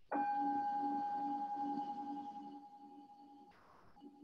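A singing bowl struck once, ringing with a pulsing, wavering hum that slowly fades. It marks the close of the practice. The ring drops out abruptly about three and a half seconds in, as happens over a video-call connection.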